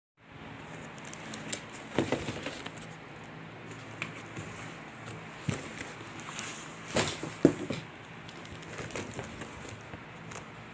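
Hands handling a taped cardboard box: scattered taps, knocks and crackles of cardboard and packing tape, loudest about two seconds in and again around seven seconds in, over a faint steady hum.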